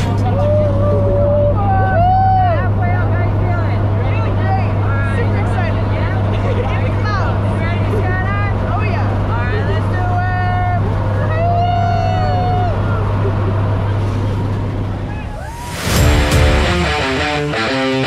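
Steady low drone of a propeller aircraft heard inside its cabin, with voices calling and chattering over it. Music comes in near the end.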